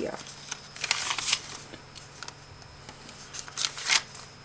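Paper pages of a small handmade junk journal being turned by hand: a few dry rustling swishes, the loudest just before the end.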